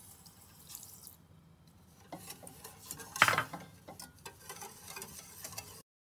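Sugar poured into a saucepan of water with a soft hiss, then a wire whisk stirring and clicking against the sides of the metal saucepan, with the loudest knock a little after three seconds in. The sound cuts off suddenly just before the end.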